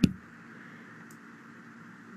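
Quiet room hiss with a single faint computer mouse click about a second in.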